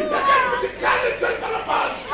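Raised, high-pitched voices of stage actors crying out, with no clear words, in short loud bursts.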